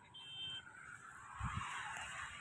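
Outdoor background hiss with a brief high steady beep near the start and a pair of low thumps about one and a half seconds in, typical of a handheld camera being moved.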